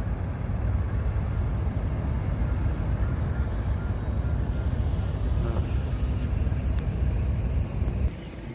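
Small wooden river boat's engine running, a steady low rumble.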